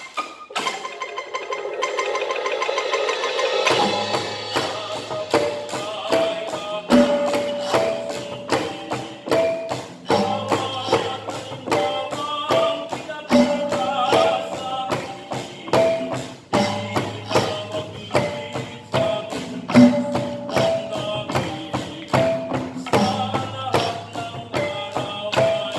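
Live percussion ensemble playing a fast, even beat of sharp struck strokes, with short pitched mallet notes over it. A building swell gives way about four seconds in to a low sustained tone that runs under the beat.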